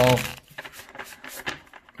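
Deck of tarot cards being shuffled by hand, a run of faint flicking clicks as the cards riffle together.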